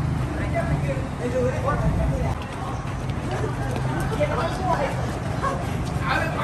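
Several people's voices calling out over a steady low rumble of traffic from the elevated road overhead.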